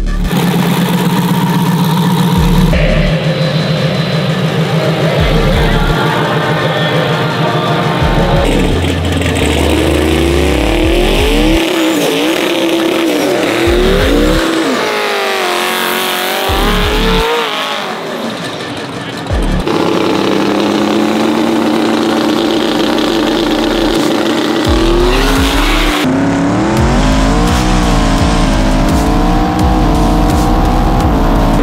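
Twin-turbocharged pickup truck engine running and revving hard, its pitch rising and falling again and again, heard in several short cut-together shots, with tire squeal from a smoky burnout.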